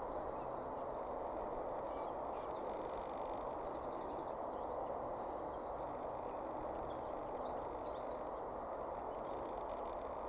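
Steady outdoor background noise with small songbirds faintly chirping and trilling throughout.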